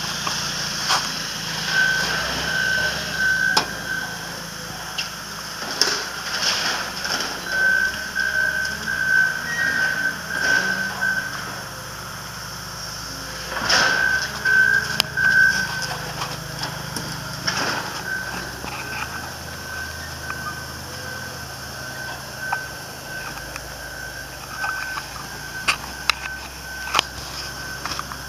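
A vehicle's reversing alarm beeping at one high pitch, about two beeps a second, in runs of a few seconds with short pauses. Underneath is a low engine hum, with scattered sharp knocks and clicks.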